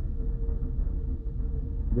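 Steady low background rumble with a faint constant hum, the room and microphone noise of a lecture recording, in a pause between speech.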